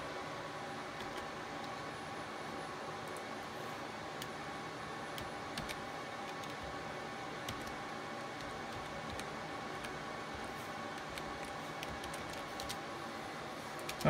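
Steady hum of rack server cooling fans, full of fixed whining tones, with a few scattered clicks of computer keyboard keys.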